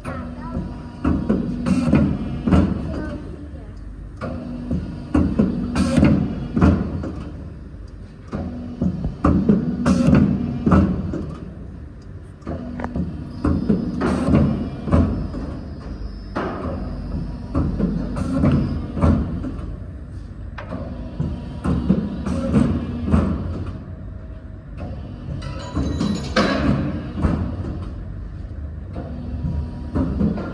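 Hydraulic guillotine paper cutter working through repeated cuts: a hum from the hydraulic drive swells with each stroke, with knocks as it strikes, about every four seconds.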